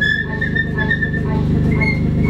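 Live experimental music from electronics and tenor saxophone: a dense low drone with a fast fine pulse under a high, held, whistle-like tone that steps up in pitch near the end.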